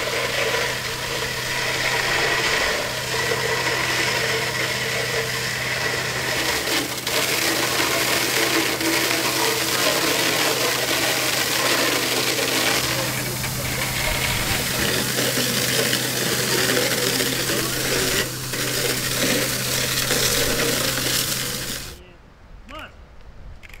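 Fire hose nozzle shooting a pressurised jet of water, a loud steady hiss of spray, with the steady hum of an engine-driven pump underneath.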